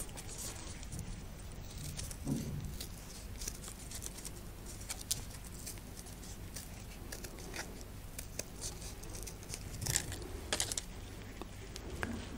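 Scissors snipping through folded paper, with paper crinkling as it is turned in the hands: a faint, irregular scatter of short snips, a few louder ones near the end.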